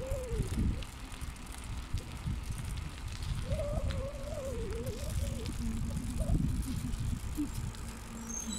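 Bicycle riding along, picked up by a phone mounted on the handlebars: a steady low rumble of wind and road with the bike rattling over the surface. About halfway through comes a brief wavering hum.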